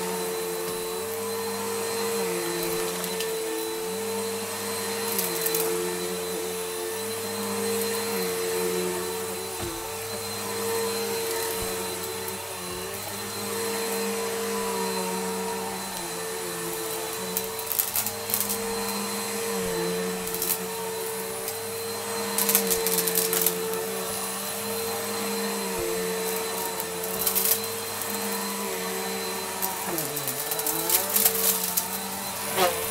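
Bissell bagless upright vacuum cleaner running on carpet, its steady motor whine shifting slightly in pitch with each push and pull stroke. A few brief crunches of debris being sucked up, clustered around the middle and near the end.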